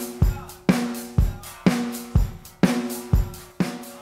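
Soloed drum track played back off a Sansui WS-X1 six-track cassette multitrack. A suitcase used as a kick drum and a snare, miked together onto one mono track, play a steady beat of alternating kick and snare hits, about two a second, with a short ringing tone after the hits.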